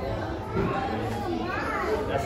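Indistinct chatter of many diners in a large dining room, children's voices among them.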